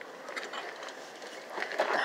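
Quiet background noise with a few faint clicks, without any engine running; a man's voice begins near the end.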